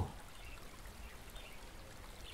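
Faint, steady babbling of a small stream.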